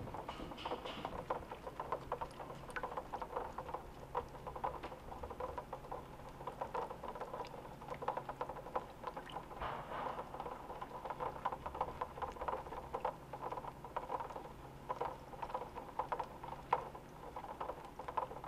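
Sea turtle hatchlings scrabbling in a shallow plastic tub of water, their flippers tapping and scraping on the plastic in a dense, irregular patter of small clicks.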